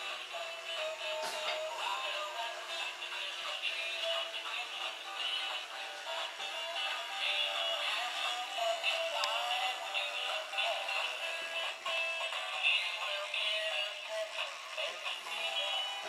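A Christmas tune with electronic singing played through a small, tinny speaker, from a battery-operated flying reindeer toy riding along a ceiling wire under a parachute.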